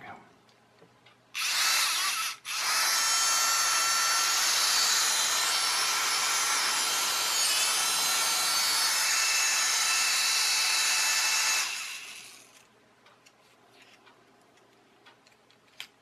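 A wall-climbing toy car's small electric suction-fan motor running at high speed with a steady whine. It starts a little over a second in, cuts out for a moment, then runs evenly for about nine seconds before winding down.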